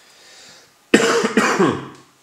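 A person coughing twice in quick succession, starting suddenly about a second in.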